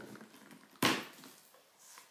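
A cardboard advent-calendar gift box is pulled open, with one sharp clack about a second in as its flaps come apart, then faint rustling of the board.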